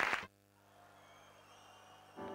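Audience applause, cut off abruptly about a quarter second in, then near silence with only a faint steady hum.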